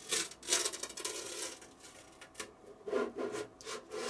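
A large 3D-printed plastic lamp shade scraping and rubbing against a 3D printer's build plate as it is worked loose. The scraping comes in several bursts, the longest in the first second and a half.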